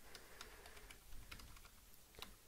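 Faint typing on a computer keyboard: a quick, irregular run of key clicks.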